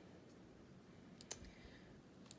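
Two quick clicks on a laptop's touchpad or keys, close together, a little over a second in, against near silence.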